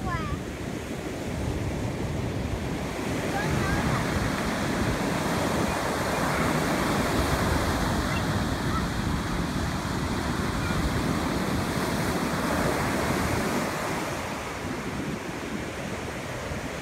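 Ocean surf breaking on a sandy beach: a steady wash of waves that swells louder through most of the stretch and eases near the end.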